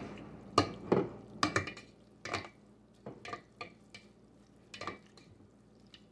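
A plastic spatula stirring a wet batter of ramen noodles, flour, egg and water in a stainless steel pot. It scrapes and knocks against the pot at irregular moments, often in the first two seconds and more sparsely after.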